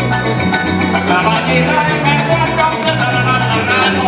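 Live joropo band playing an instrumental passage: a llanero harp over a steady bass line, with maracas shaking a fast, even rhythm.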